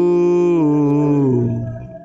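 A man singing one long held note of a worship song into a microphone, stepping down in pitch about half a second in, then sliding lower and fading out near the end.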